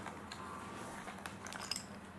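Quiet room tone with a few light clicks near the end, from the plastic body of a Dyson V7 cordless vacuum being turned over and handled.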